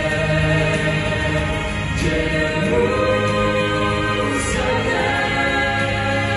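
Small mixed vocal ensemble singing a gospel song in harmony through microphones, holding sustained chords that shift to new notes about two and three seconds in.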